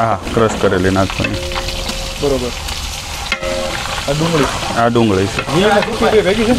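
Hot oil sizzling in a large aluminium cooking pot as the contents are stirred, a steady frying hiss.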